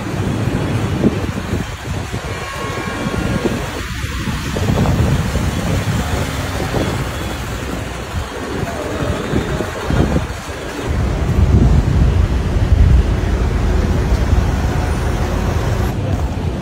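Busy city street ambience: steady traffic noise, with a heavier low rumble from about eleven seconds in.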